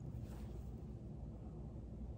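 Quiet room tone with a steady low hum, and a faint, brief rustle of linen fabric being handled near the start.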